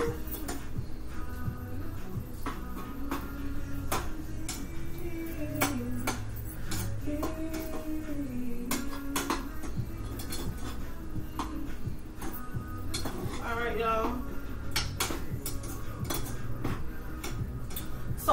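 A cooking utensil clinking and scraping against pots and pans on a stove while food is stirred, with repeated short clicks throughout. A soft melody runs underneath.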